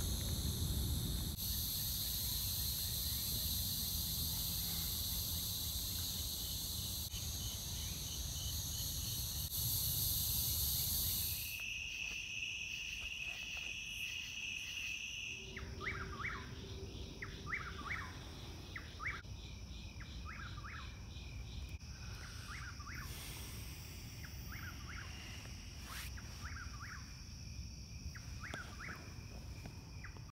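Woodland ambience: a steady high-pitched drone of insects, with a bird calling over and over in short, falling chirps about one to two a second from about halfway through. The whole background shifts abruptly a few times, most clearly about a third of the way in.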